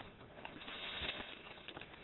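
Rustling and scuffing noise, strongest through the middle second, after a light knock at the start.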